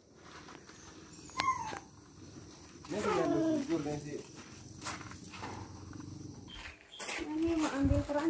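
An animal gives one drawn-out call, falling in pitch, about three seconds in, after a sharp click with a short falling chirp. Voices begin near the end.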